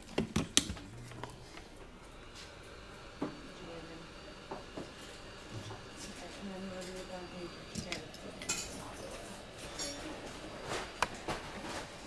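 Hand tools being handled on a workbench: scattered light clicks and clinks, the loudest few in the first second, over a faint steady background.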